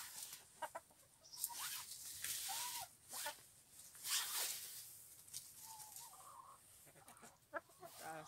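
Hens clucking softly, with a couple of short calls, between bursts of rustling in dry leaves and litter.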